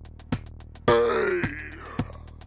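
Electronic drum pattern from a Reaktor Blocks software patch at 108 BPM: a drum hit on each beat, a little under twice a second, with quick high ticks between. About a second in, a loud pitched synth or sampler sound drops in pitch over about half a second and trails off.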